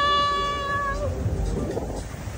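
A woman's high-pitched, held squeal of laughter: one long steady note that ends about a second in. After it comes low wind and surf noise.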